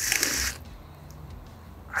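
Soda siphon squirting soda water into a glass: a loud hissing spray for about the first half second, then a quieter fizzing hiss.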